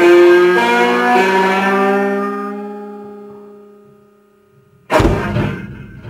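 Guitar playing the last few notes of a blues, then letting the final chord ring out and fade away. Near the end comes a sudden loud thump that dies away over about a second.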